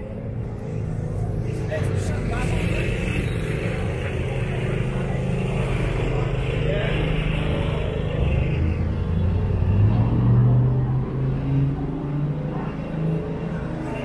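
A motor vehicle's engine running, its pitch rising about eight seconds in, with people talking around it.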